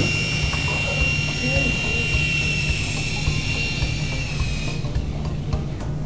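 Small infrared-controlled toy helicopter's electric motors whining steadily at a high pitch, then cutting out about five seconds in.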